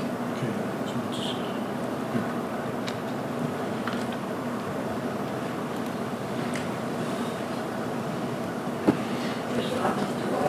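Steady room noise and faint hum through an open courtroom microphone, with a few faint clicks. A sharp knock comes about nine seconds in, and there are small bumps near the end as the witness's gooseneck microphone is handled.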